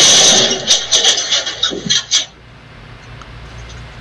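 Rustling and knocking handling noise from the video-call device being picked up and carried, with a loud hiss and a few clicks that stop about two seconds in, leaving low room noise.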